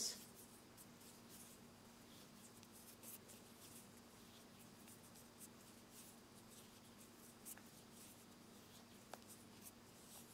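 Near silence with faint, scattered soft clicks and rustles of cotton thread being worked onto a tatting needle as double stitches are tied.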